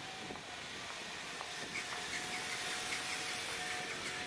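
City street ambience: a steady hum of traffic with a faint high tone running through it, and a few faint short chirps in the middle.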